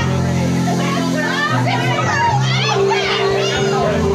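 Live dueling-pianos band music with held low notes, under a crowd of many voices singing and shouting along at once.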